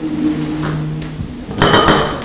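A low steady hum for about the first second, then a glass lid clinking and rattling on a glass tobacco jar as it is handled, with a brief high ring, near the end.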